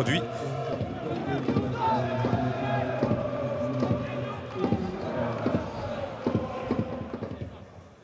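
Stadium crowd: many voices singing and shouting together, with a few short thuds scattered through, fading down near the end.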